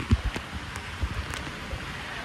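Steady rushing hiss of water falling and splashing, with a few low knocks from the phone being handled in its waterproof case, the first and loudest just after the start.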